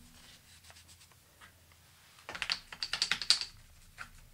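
A quick flurry of light clicks and taps lasting about a second, a little past the middle.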